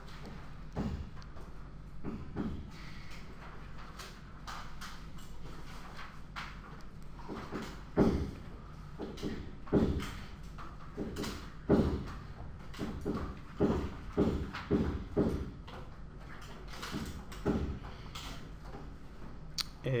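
Building-work noise: a series of irregular thuds and knocks, loudest about eight and twelve seconds in, over a steady low hum.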